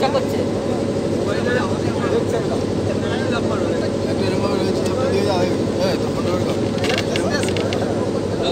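A river ferry launch's engine running steadily, a constant low drone, with people talking in the background.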